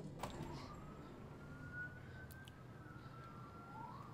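Faint police siren from a film soundtrack, one slow wail that rises and then falls in pitch.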